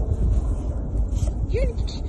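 Wind buffeting a phone microphone outdoors, a steady low rumble, with a short rise-and-fall vocal sound about one and a half seconds in.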